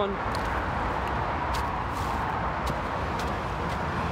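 Steady drone of traffic on a nearby highway, with a few light footsteps crunching on a dry dirt path.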